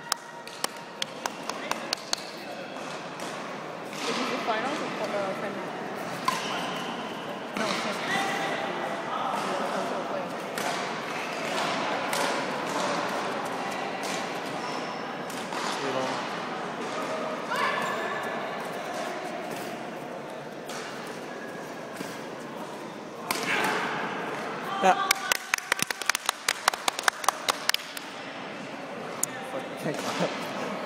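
Indistinct voices talking in a large, echoing gym, with the sharp hits of a badminton game: a quick run of sharp clicks at the start and a dense flurry of sharp clicks and smacks a few seconds before the end.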